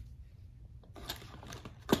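Faint handling noises of a cardboard game board and a card deck: a few light taps and rustles, then one sharper click near the end.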